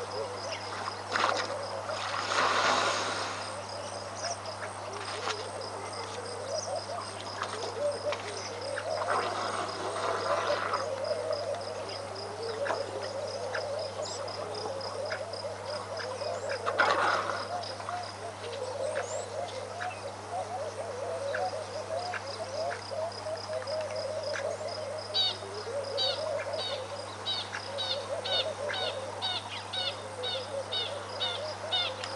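Outdoor bush ambience of many birds chirping and calling, with a steady high insect ticking underneath. Quick high-pitched repeated chirps come in for the last few seconds. A few brief rushes of noise stand out about two, ten and seventeen seconds in, over a constant low hum.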